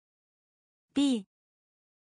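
One short word, the Mandarin 壁 (bì, 'wall'), spoken once with a falling pitch by a text-to-speech voice about a second in. The rest is digital silence.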